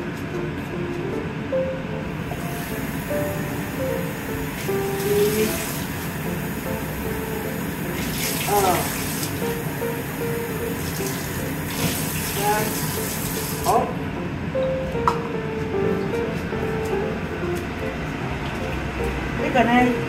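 Kitchen tap running into a glass measuring cup in several spurts, filling it with water for the braise, over light background music with a simple stepping melody.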